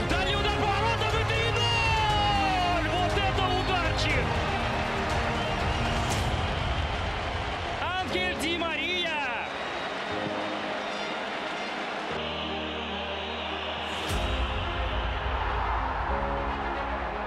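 Cinematic epic trailer music with steady held chords, laid over football match audio. Excited voices shout in rising and falling calls about eight seconds in, as the goal goes in.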